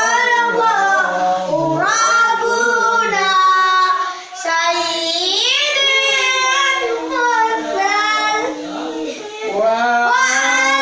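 Children and a man singing a sholawat (Islamic devotional song) together, with no instruments, in long drawn-out melodic lines. The singing breaks off briefly about four seconds in.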